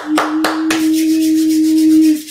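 A man clearing his throat: a few short hacks, then one long, steady, rasping clear that lasts about two seconds and stops abruptly.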